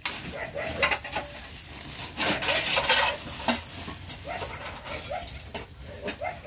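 Thin plastic bag crinkling and rustling as a head of cabbage is pulled out of it, loudest about two to three seconds in. Short, repeated high calls sound in the background.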